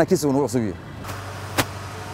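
A man speaks briefly at the start, then a steady low background hum with a single sharp click about one and a half seconds in.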